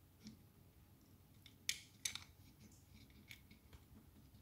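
Faint small clicks and scrapes of a little circuit board being pushed onto its header pins inside a plastic box, with two sharper clicks close together about halfway through.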